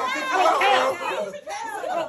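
Several people talking over one another in excited, overlapping chatter, with no single voice clear.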